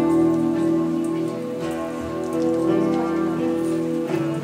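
Electric guitar playing slow instrumental music, with long held notes and chords that change about once a second.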